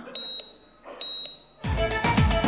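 Two short, high electronic beeps about a second apart, like a heart monitor, then music with a strong beat starts near the end.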